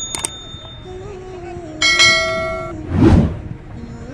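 Subscribe-animation sound effects: a couple of quick clicks, then a bright bell chime ringing for just under a second about two seconds in, followed at about three seconds by a short loud burst of noise.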